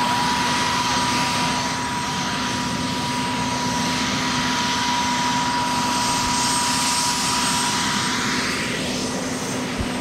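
Marine One, a Sikorsky VH-60 Night Hawk helicopter, running on the ground with its twin turbine engines: a steady whine over a dense rushing noise.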